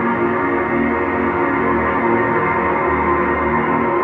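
Sustained, ethereal pad-like chords from the Water Piano virtual instrument, built from samples of a water-filled grand piano, with its water level turned up. An E-flat minor ninth chord is held with a low E-flat beneath.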